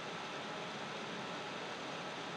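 Steady faint hiss of room tone, with no other sound.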